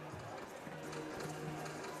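Faint stadium background sound: a low wash with a faint steady hum.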